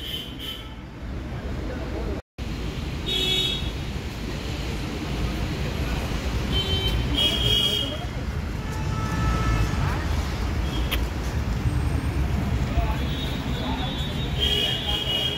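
Steady outdoor traffic rumble with voices in the background and a few short high tones, cut by a brief total dropout about two seconds in.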